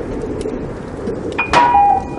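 A single bright bell-like ding struck about one and a half seconds in, its tone ringing on after a quieter stretch.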